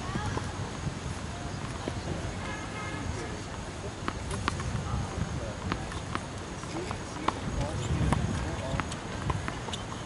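Tennis ball bouncing on a hard court before a serve: a series of sharp, irregularly spaced pops starting about four seconds in, over faint background voices.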